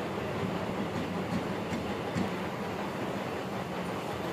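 Steady low mechanical rumble with a constant hum, with a few faint light clicks over it.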